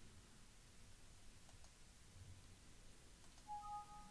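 Near silence with a couple of faint mouse clicks, then about three and a half seconds in a short two-tone Windows alert chime sounds as a 'file already exists, replace it?' warning dialog pops up.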